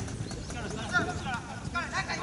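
Players' shouts and calls across a soccer pitch, short and scattered, with a couple of brief sharp knocks.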